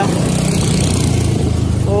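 A vehicle engine drones steadily while moving through city traffic. A rushing hiss rides over it for the first second and a half.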